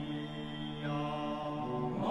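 A group of Bunun singers chanting together, holding long steady notes in several parts that form a sustained droning chord.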